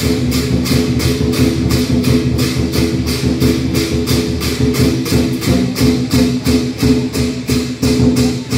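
Lion dance music: a fast, steady percussion beat of drum and cymbal strikes, about four a second, over steady held tones.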